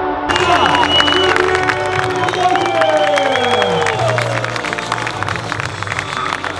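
Music with a steady bass line, joined just after the start by a crowd cheering and applauding, with shouts rising and falling over dense clapping.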